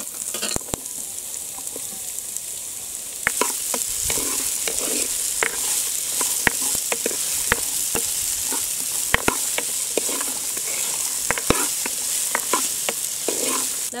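Chopped raw mango pieces sizzling and frying in hot oil in a clay pot, stirred with a wooden ladle that knocks and scrapes against the pot. The sizzle grows louder about three seconds in.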